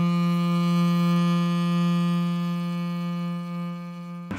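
Intro music ending on one long held low cello note, a single steady pitch that grows quieter over the last second.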